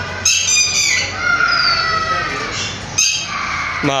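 A bird calling loudly from a tree: a string of harsh, pitched calls one after another, some held for about a second and sliding down in pitch.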